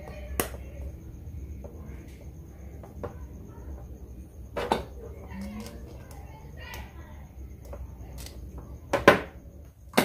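Small metal parts being handled: a few sharp clicks and taps as screw terminals are pushed into a plastic pen handle and gripped with pliers. The loudest clicks come near the end.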